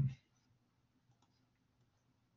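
A spoken word trails off, then near silence with a few faint, scattered clicks.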